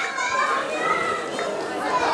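Several voices calling and chattering at once, among them children's high voices.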